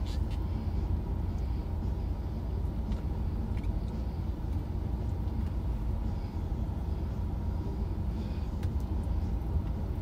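Steady low rumble of an idling car engine heard inside the parked car's cabin, with a few faint clicks and scrapes of a plastic fork working food in a takeout container.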